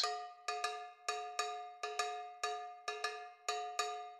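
Background music of struck, bell-like metallic notes ringing out and fading, repeated at about three strikes a second in an uneven rhythm.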